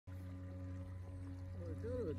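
Bixby electric kayak motor running steadily, a low even hum with a few fixed higher tones over it, as the kayak cruises under motor power. A man starts talking near the end.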